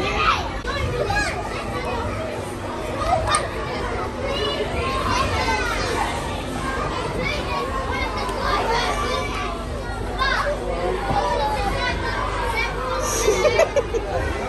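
Busy background din of many children's voices, chattering and calling out over one another, as in a crowded play area.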